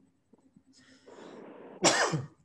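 A man's breathy intake of air, then a single sudden loud cough near the end.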